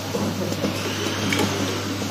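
Vibratory bowl feeder of a TCT saw-blade tip welding machine humming steadily at a low pitch, with the small carbide tips rattling as they are shaken along the bowl's spiral track.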